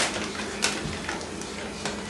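Steady room hiss with a few faint rustles from paper-bag hand puppets being moved.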